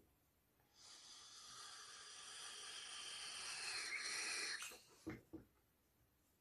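A person's long hissing breath that grows louder for nearly four seconds and stops suddenly, followed by two short puffs.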